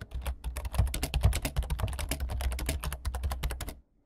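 Rapid, irregular clicking like keyboard typing, about ten clicks a second, over a low hum. It cuts off suddenly shortly before the end.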